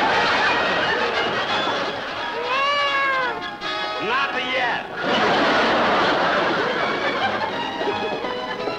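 A cat meowing: a long rising-and-falling cry about two and a half seconds in, then shorter rising squeals, over a busy din. Music with held notes comes in near the end.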